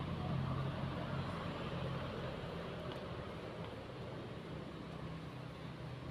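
Steady low hum of a motor vehicle's engine, fading away over the first few seconds and leaving a steady outdoor background noise.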